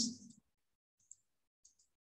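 Computer mouse clicking, faint: a single click about a second in, then a quick double click.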